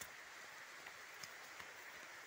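Near silence: faint outdoor background hiss with a few soft, brief ticks.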